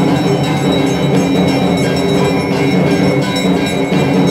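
Loud, continuous devotional music of drums and ringing metal bells, with a steady ringing and busy, even texture.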